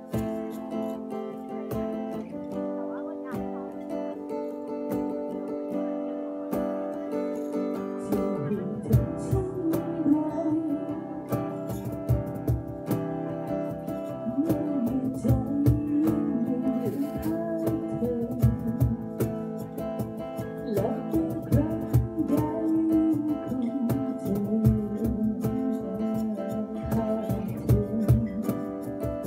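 Live acoustic-guitar band music: a steel-string acoustic guitar strummed alone at first, then from about eight seconds in a woman sings into a microphone over it, with a steady beat of sharp percussive hits.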